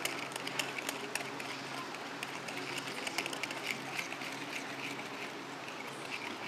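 Wire whisk beating curd and brown sugar in a plastic bowl, with quick light clicks and scrapes as it hits the bowl while the sugar dissolves. Faint background chatter runs underneath.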